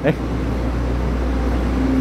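A steady low rumble with a faint hum in it, after a short spoken exclamation at the very start.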